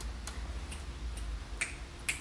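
Finger snapping in an even rhythm, about two snaps a second, four sharp snaps with the last one louder.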